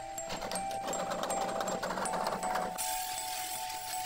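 Background music with a repeating melody. Over it, a trowel scrapes and spreads cement mortar on the back of a ceramic wall tile: a gritty scraping from shortly after the start, turning to a brighter hiss for about the last second.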